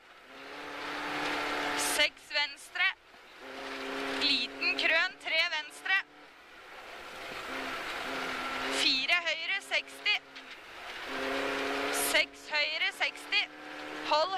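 Rally car engine heard from inside the cabin, pulling hard on a snowy stage. Its revs climb steadily for one to three seconds at a time and break off sharply between the climbs, as it accelerates up through the gears.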